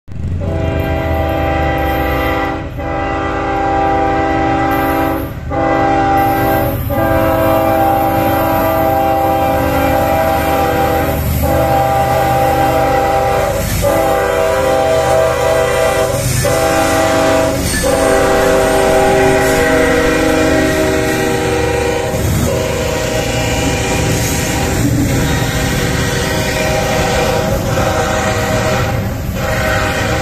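Diesel freight locomotive sounding its multi-tone air horn in long, almost unbroken blasts with short breaks every couple of seconds, the warning for a road crossing, over the rumble of the engines and the rolling cars.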